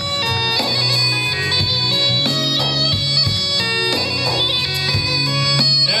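Instrumental Black Sea folk music: a fast, ornamented reedy melody over a steady low drone.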